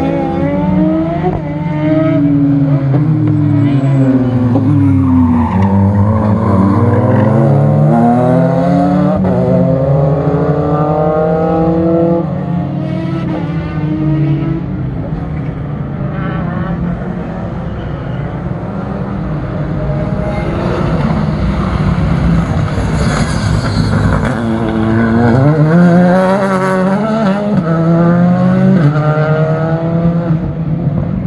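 Racing cars' engines lapping a circuit, the note repeatedly falling and rising as the cars brake, shift and accelerate through corners. The pitch drops low about five seconds in, climbs through the gears, and rises sharply again about twenty-five seconds in.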